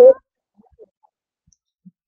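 A man's voice trails off at the very start, then a pause of near silence broken by a few faint, tiny clicks.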